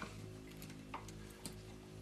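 Quiet background music of sustained low tones, with two faint clicks about a second in and again half a second later.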